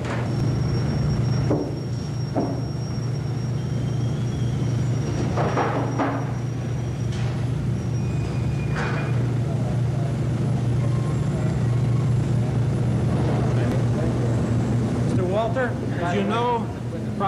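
A steady low hum that holds level throughout, with faint talk now and then.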